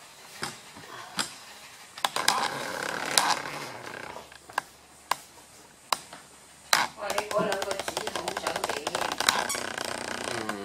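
Dogs moving on a wooden floor with scattered sharp clicks and scuffles, then from about seven seconds a dog gnawing a toy in a dense run of rapid clicks. Voices talk underneath.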